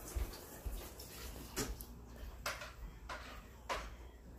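Three short breathy puffs about a second apart, close to the microphone: a person breathing hard through the nose while eating a mouthful of hard-boiled egg.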